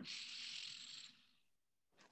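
A soft breath out into a microphone, an even hiss lasting about a second, then near silence.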